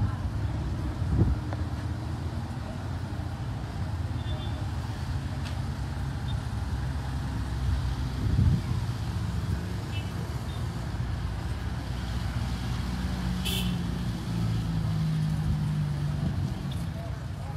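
Low steady hum of vehicle engines running nearby under the murmur of a crowd.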